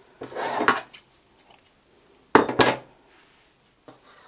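Two short bursts of dry crackling and knocking, the second louder, as a bowl made of dried autumn leaves is handled.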